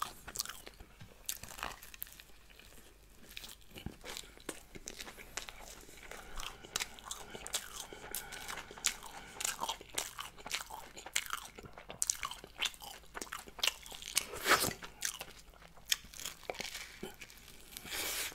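Close-miked crunching and chewing of a fried-egg toast sandwich: crisp toast cracking between the teeth in repeated bites, with the loudest crunch about fourteen seconds in.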